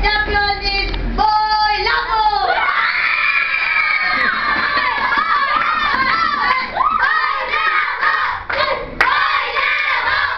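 A classroom of children shouting and cheering together in many overlapping voices, with one long, high cry held for over a second about three seconds in.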